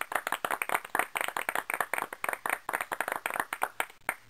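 Hand clapping from a few people, quick uneven claps that die away near the end.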